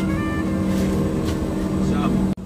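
Steady cabin drone of a private jet in flight: a constant low hum of engines and airflow.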